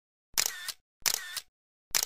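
Camera shutter firing three times, under a second apart. Each shot is a sharp click followed by a second click a moment later as the shutter opens and closes.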